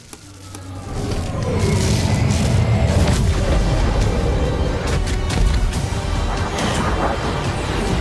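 Sci-fi film trailer music and sound design: it swells in over the first second into a loud, dense bed with deep booms and several sharp hits.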